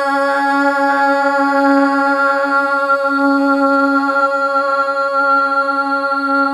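A woman singing a Red Dao lượn folk song, holding one long, steady note.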